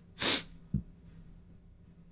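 A person's single short, sharp burst of breath, about a third of a second long, in a pause between sentences.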